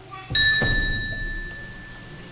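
A small bell struck once, ringing bright and clear and fading over about a second and a half: the sacristy bell that signals the start of Mass.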